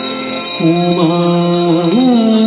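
Hindu aarti hymn with musical accompaniment: a voice holds a long sung note from about half a second in, then slides up to a higher note near the end.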